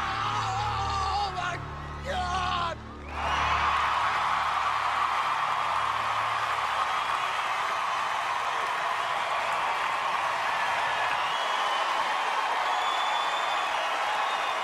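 Music with a deep bass cuts out about three seconds in, and a large audience breaks into steady cheering, screaming and whooping.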